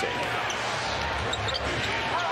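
A basketball dribbled on a hardwood court over the steady hum of an arena crowd.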